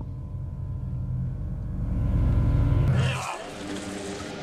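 A low rumble with steady sustained tones over it, swelling louder and then cutting off abruptly about three seconds in, where a different, brighter sound takes over.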